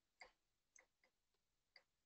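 Near silence, with about five faint, short clicks spread through it.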